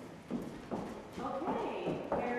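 Ballet pointe shoes tapping and knocking on a wooden studio floor as a dancer steps across it, with a voice or music behind.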